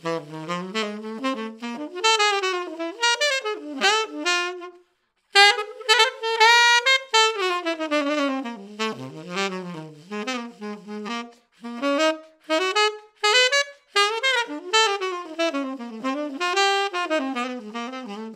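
1968 Selmer Mark VI tenor saxophone played solo: melodic phrases and quick runs up and down the horn, with a brief pause about five seconds in.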